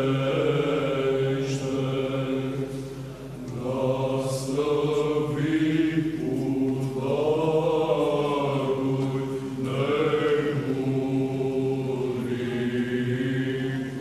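Orthodox liturgical chant sung by several voices: a steady low held note, like the ison drone of Byzantine chant, beneath a slowly moving melody, with brief breaths between phrases.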